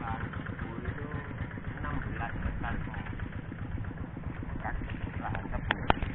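Faint, distant voices talking over a steady low rumble, with a sharp click near the end.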